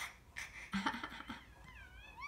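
Baby giving short bursts of laughter, then a high, wavering squeal that starts near the end.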